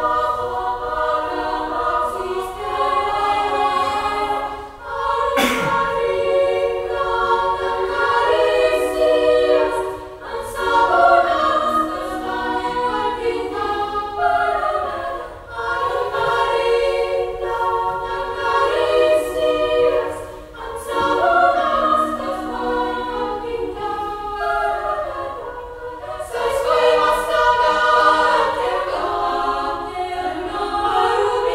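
Women's choir singing a cappella in harmony: held chords in phrases of about five seconds, with short breaks for breath between them.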